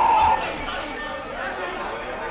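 A long, steady whistle blast that cuts off about a third of a second in. It is followed by a steady murmur of spectators chatting.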